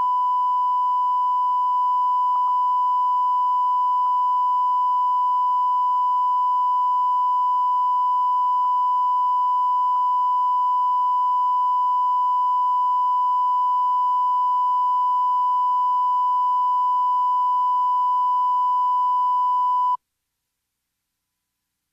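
Steady 1 kHz reference tone, the line-up tone that goes with colour bars on a broadcast video tape, held at one unchanging pitch.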